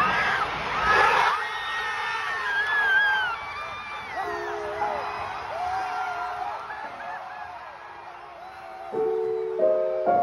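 Stadium crowd cheering and whooping as a goal goes in, many shouting voices heard through a phone in the stands. The cheering is loudest in the first couple of seconds and then fades, while soft held music tones come in from about the middle, with piano chords near the end.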